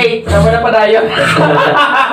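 A man talking and chuckling into a close microphone.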